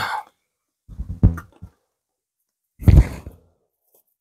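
A man's breath: three short exhales, one at the start, one about a second in and one near three seconds, with dead silence between them.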